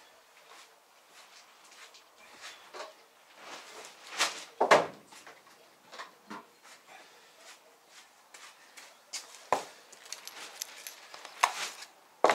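Scattered knocks and bumps of plastic crates and cuts of meat being handled and packed, a few seconds apart, the loudest about four to five seconds in.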